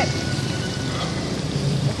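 Hot oil in a wok sizzling and bubbling steadily as round batter cakes deep-fry.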